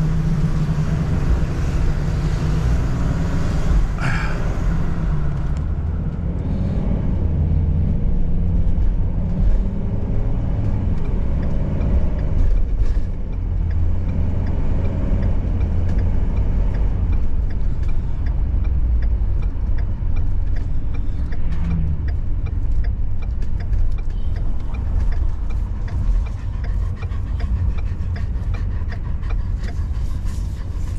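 Engine and road noise heard inside the cab of a moving RV: a steady low drone that shifts a little as the vehicle drives along city streets.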